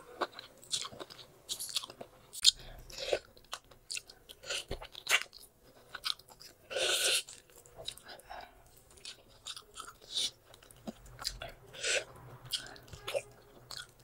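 Close-miked chewing and gnawing of a piece of boiled bone-in pork: irregular wet clicks and crunches from teeth and mouth, with one louder, longer burst about halfway through.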